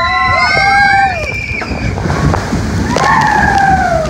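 Riders screaming together on a log flume's big drop, several long held screams over loud rushing water and wind. A second wave of screams starts about three seconds in as the log splashes through the spray at the bottom.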